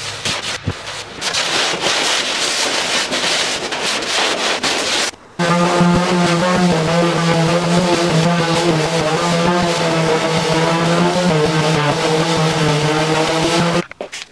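Cedar-strip canoe hull being sanded by hand, with quick rough rubbing strokes. After about five seconds and a short break, an electric random orbital sander runs steadily against the hull, giving a loud even hum.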